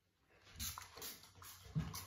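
A small perfume spray bottle spritzed in about four short hisses, with a low knock of handling near the end.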